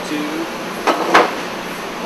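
Two sharp knocks about a quarter second apart, over a steady background hum.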